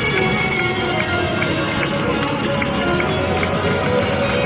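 Live rock band playing an up-tempo song with electric guitars and drums, keeping a steady beat.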